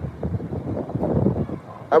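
Wind buffeting a phone's microphone, an uneven rumbling rush with no clear tone.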